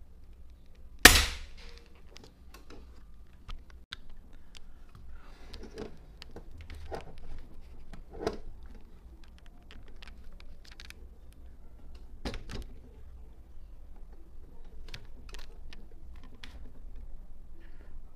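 Air rifle fired once, a sharp crack about a second in. Fainter clicks and knocks of the rifle being handled follow, with another short crack about twelve seconds in.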